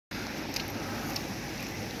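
Heavy rain falling on wet brick paving: a steady hiss, with a couple of faint ticks about half a second and a second in.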